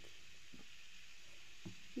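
Quiet, steady background hiss of room tone, with two faint soft ticks, one about half a second in and one near the end.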